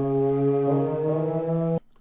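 A vocal sample from a trap beat playing back in FL Studio: a single long held note that changes slightly partway through and cuts off sharply just before the end.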